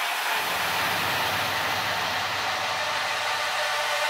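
Electronic music intro: a steady wash of white noise over faint held synth tones, with a low rumble coming in under it near the start and no drums yet.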